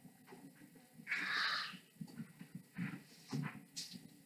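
Marker pen strokes on a whiteboard: one longer scraping stroke about a second in, then several short ones.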